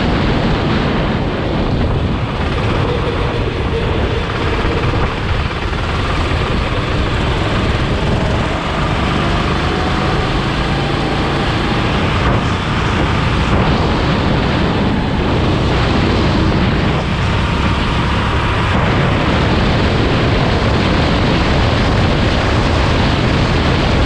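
Sodi RT8 rental kart's engine running flat out through a lap, its note rising and falling with the throttle through the bends, under heavy wind buffeting on the onboard camera.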